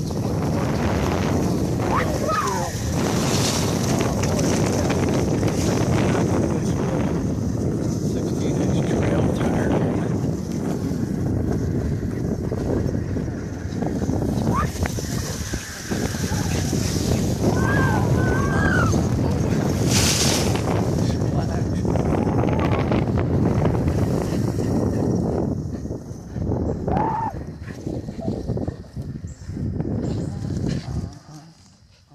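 Wind buffeting the microphone of a rider moving at speed on an electric unicycle. The rushing noise is dense and low-pitched, and a few brief, high, gliding whine-like tones come through it. The noise eases off near the end as the ride slows.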